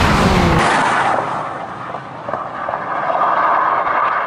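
Audi S4 at full speed on a top-speed run: engine and rushing noise of a car at high speed. The deep engine rumble, with a falling pitch, stops abruptly about half a second in, leaving a rushing noise that fades and then swells again toward the end.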